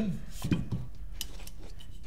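Paintball marker receiver and buffer tube adapter being fitted together by hand: a few light clicks and knocks of hard parts meeting and seating.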